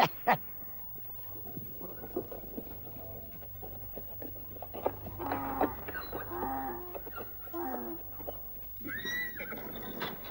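Farm animals calling, like cattle lowing, several times around the middle, over a steady low hum. A higher call rises and falls near the end.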